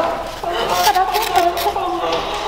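A woman's voice in a long, drawn-out exclamation, with rustling and clicks of a cardboard box being handled as it is opened.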